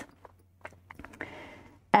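Quiet handling noise from a hand-knitted wool sweater on circular needles being lifted and shown: a few faint clicks, then about a second of soft rustling.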